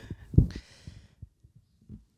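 A single dull, low thump about half a second in, followed by a few faint soft knocks.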